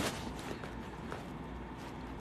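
Handheld phone being moved: a click right at the start and a few faint ticks from handling, over steady low room noise.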